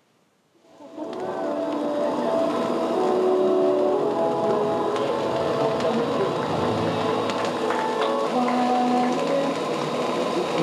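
After about a second of silence, the sound of a busy room fades in: music blended with many overlapping voices, steady throughout.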